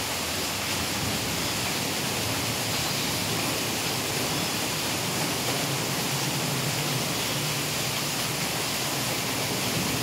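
Steady rushing noise, even and unbroken, with no distinct events.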